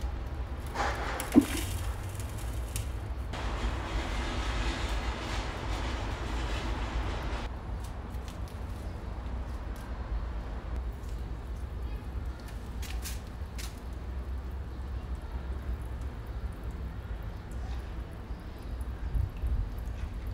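Repotting a rosemary plant: a sharp knock about a second and a half in as the root ball and pots are handled, then a few seconds of soil rustling that stops abruptly, over a steady low rumble.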